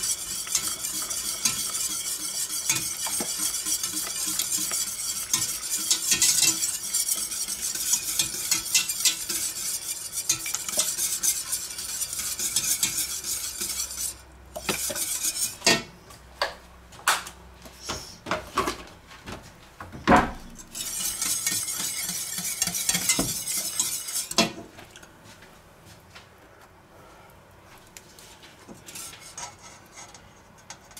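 Wire whisk beating a thick white roux sauce in a stainless steel pot, a fast steady scraping and clinking of the wires against the pot for about fourteen seconds. After that come scattered knocks and clinks with another short run of whisking, and the sound drops away about five seconds before the end.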